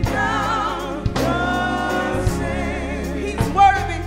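Live gospel praise music: a drum kit and electric guitar play over a steady bass, with voices singing wavering held notes and drum hits marking the beat, the loudest hit near the end.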